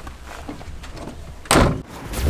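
A van door slamming shut: one loud thud about one and a half seconds in, over a low steady rumble.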